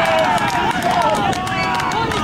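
Several voices shouting and cheering at once, overlapping and without clear words, celebrating a goal just scored in a football match.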